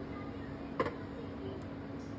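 A short sharp clack from a steel tumbler a little under a second in, as it is pressed and twisted through a slice of bread to cut out a round, followed by a fainter tick. A steady low hum underneath.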